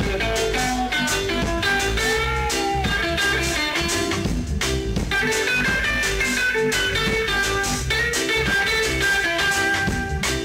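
Live reggae band playing an instrumental break: an electric guitar plays a lead melody over bass guitar and drum kit.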